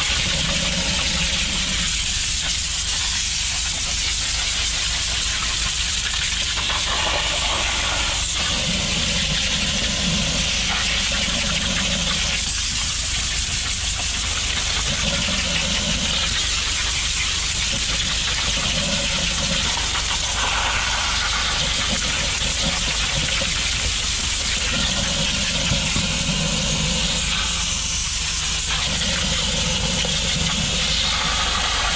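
High-pressure drain jetter wand spraying a steady jet of water that hisses and splatters onto paving and a floor drain grate, with a steady engine hum from the jetter underneath.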